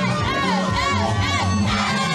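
A crowd cheering over loud dance music with a steady bass beat, with a run of about four high rising-and-falling calls in the first second and a half.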